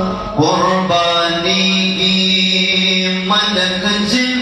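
A man's voice singing a Pashto naat into a microphone in long, drawn-out held notes. After a brief pause for breath at the start, a new phrase rises in about half a second in, with one long sustained note through the middle.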